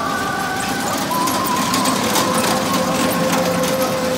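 Kiddie car carousel turning, its small toy cars rattling over a concrete track, with a simple tune of long held notes stepping from one pitch to the next over the clatter.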